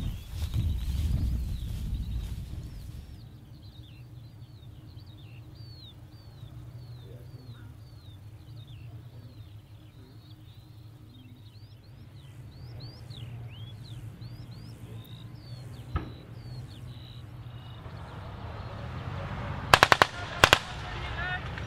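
A bird calls in a long run of short, high, downward-slurred chirps, about two a second, over a steady low rumble. A single distant gunshot comes a few seconds before the end. Two or three loud, sharp shots of training-ammunition gunfire come right at the end, the loudest sounds of all.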